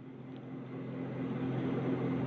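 Steady background noise with a low hum, slowly growing louder through the pause, like a machine or vehicle nearby.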